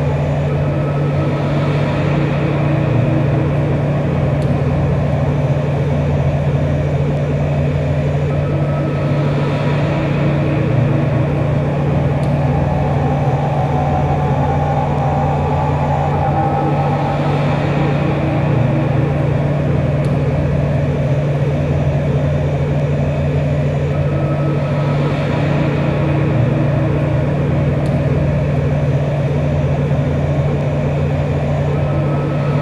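Droning experimental noise music: a steady low hum under a dense, unchanging haze of sound. A brighter hiss swells and fades about every eight seconds.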